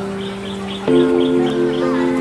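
Instrumental passage of a slow acoustic pop song on electric keyboard and acoustic guitar. One held chord fades away, and a new chord is struck about a second in.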